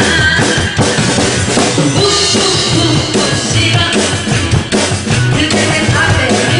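Live band music in which a drum kit plays a busy beat with bass drum and snare hits over sustained keyboard tones, an instrumental passage with no singing.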